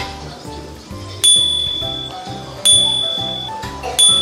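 Background music with a pulsing bass, with a bright bell ding struck three times about a second and a half apart, each ringing on briefly; the sound effect of an on-screen subscribe-button animation.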